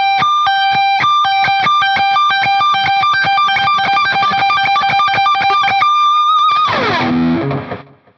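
Electric guitar playing a fast high-register stretch lick, rapid pull-offs from the 22nd fret down to the 15th, two high notes alternating quickly for about six seconds. Near the end it drops in a long falling pitch glide into low notes and dies away.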